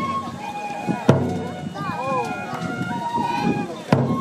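Music for a Japanese nenbutsu kenbai sword dance: a large taiko drum is struck hard twice, about a second in and near the end, each stroke ringing on low. Between the strokes come held high flute notes and voices singing and calling out.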